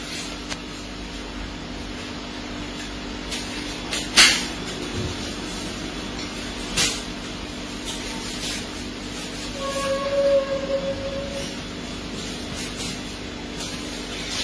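A steady low hum with a few sharp clicks as a turmeric-dyed cloth is untied and unfolded by hand. About ten seconds in there is a brief held tone with overtones.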